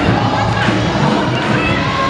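A gospel choir singing an upbeat song with live accompaniment, over an audience clapping and cheering.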